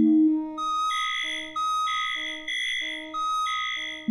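Early electronic music: steady, pure synthesizer tones at a few fixed pitches, a high tone and a lower one taking turns in short notes of about half a second, over a faint low drone.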